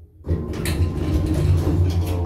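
Elevator cab's automatic sliding door opening at the floor, starting suddenly about a quarter second in, with the door operator's low hum under it.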